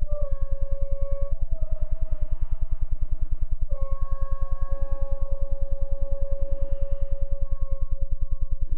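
Trombones playing long held notes in free improvisation, the pitch dropping slightly a few seconds in and then sustaining. Underneath runs a fast, steady low pulse of about eight beats a second.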